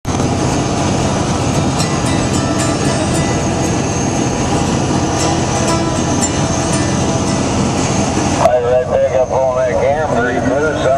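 Steady road and engine noise inside a vehicle moving at highway speed. About eight and a half seconds in it drops away suddenly and a person's voice comes in, rising and falling.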